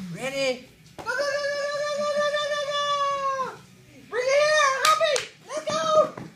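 A high-pitched, drawn-out vocal call held steady for about two and a half seconds, then a few shorter sing-song calls that rise and fall near the end.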